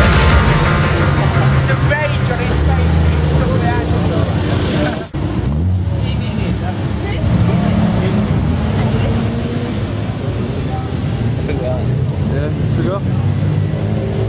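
Car engines running, with people talking in the background and the sound cutting out briefly about five seconds in.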